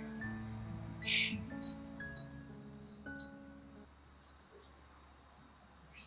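Cricket chirping in an even, rapid pulse of about five chirps a second, over soft sustained background music that fades out about four seconds in.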